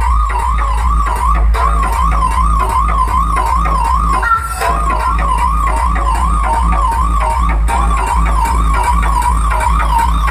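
DJ music played loud through a large sound system: heavy, continuous bass under a siren-like warbling tone that wavers about three times a second, breaking off briefly about halfway through.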